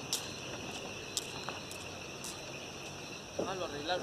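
A chorus of night insects, crickets, keeps up a steady high-pitched trilling, with a few faint clicks. A person's voice comes in briefly near the end.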